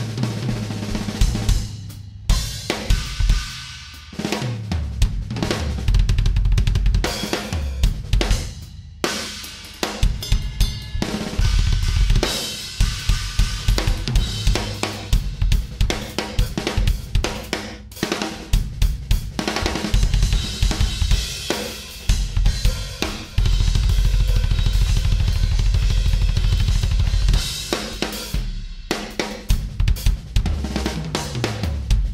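Drum solo on a DW drum kit with Zildjian cymbals: fast snare and tom fills, cymbal crashes and hi-hat, with a few brief breaks. Stretches of rapid, continuous bass drum strokes, the longest in the second half.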